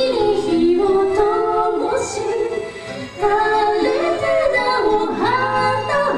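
A woman sings a sustained melody with vibrato, backed by an acoustic band, in a live performance of a Japanese song; the phrase breaks briefly about three seconds in.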